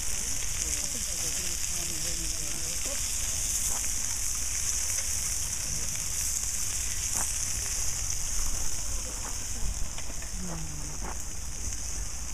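Sausages and rissoles sizzling on a barbecue hotplate: a steady hiss, with a few sharp clicks of metal tongs against the steel tray.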